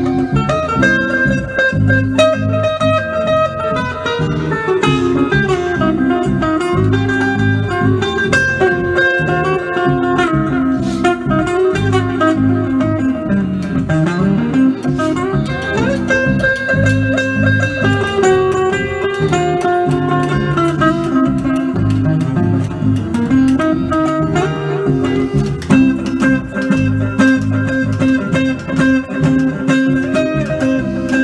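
Electric guitar with effects playing improvised jazz: sustained notes layered over a low repeating part, with occasional pitch glides.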